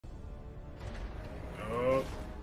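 Film soundtrack starting up: a steady low rumble, then about a second and a half in a short rising tone that peaks at the end.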